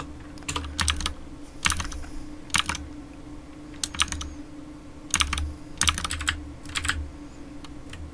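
Computer keyboard keystrokes in short clusters of two or three clicks, coming every second or so, over a low steady hum.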